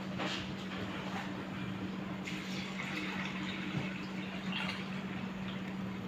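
Water poured from an aluminium jug into a pot of soaked lentils, the pouring stream getting louder and brighter from about two seconds in and running on steadily.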